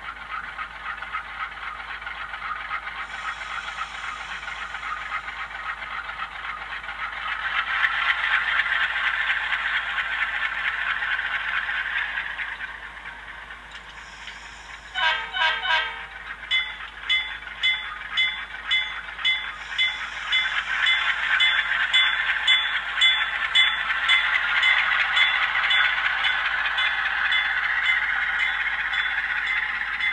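HO scale Atlas U23B model's LokSound decoder playing diesel locomotive sounds through the model's small onboard speaker: the engine running and revving up about a quarter of the way in, then easing back before the middle. From about halfway the locomotive bell rings in regular strokes, a little under two a second, while the engine builds again.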